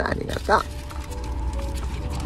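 A toddler lets out a short fretful whimper in the first half-second, on the edge of crying. Under it runs the steady low rumble of a taxi's engine, with faint background music.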